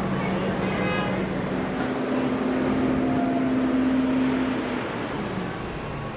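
Visitor tram train's tow-truck engine running as it pulls past, a steady low hum over even background noise, with a second engine tone holding for a few seconds in the middle.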